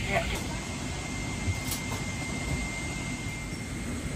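Steady airliner cabin noise inside a Boeing 777-300ER: an even low rush of air and engine noise, with a faint thin high tone through most of it. A PA voice trails off just at the start.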